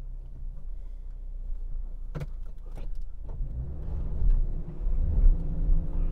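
2021 Subaru Crosstrek Sport's 2.5-litre naturally aspirated flat-four engine running at low revs, heard from inside the cabin, getting louder over the last two seconds.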